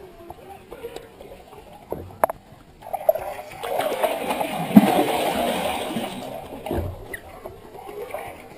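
Water splashing and sloshing as a large muskellunge thrashes at the surface right beside the boat. It starts about three seconds in, with one sharp splash near the middle, and dies away before the end.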